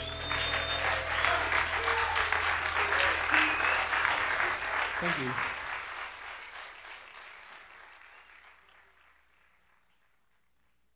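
Live concert audience applauding and cheering, fading out gradually over the last few seconds.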